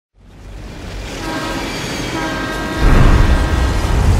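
Multi-tone locomotive air horn sounding twice, about a second in and again about two seconds in, over a train rumble that swells up from silence. Near the end the rumble jumps to a loud, heavy low roar as the train bears down.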